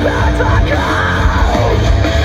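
Live progressive metalcore played loud through a festival PA: heavy distorted guitars, bass and drums with a harsh yelled vocal over them, heard from the audience.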